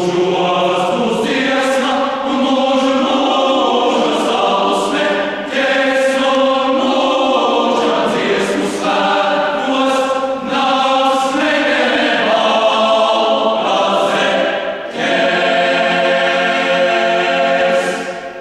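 Choir singing in several parts in sustained chords, phrase by phrase with short breaks between them; a long final chord is held over the last few seconds and released at the very end.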